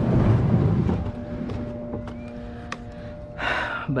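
Plastic kayak hull scraping over a muddy bank as it is pushed off into the water during the first second, then a brief rush of water from a paddle stroke near the end.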